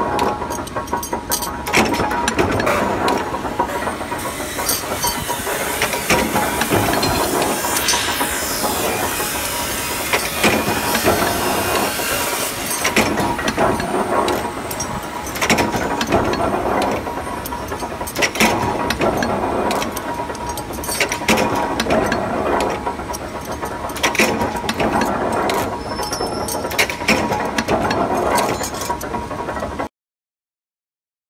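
Punch press stamping steel hinge parts in a die: a sharp metal clank at each stroke, every second or two, over the steady running noise of the press.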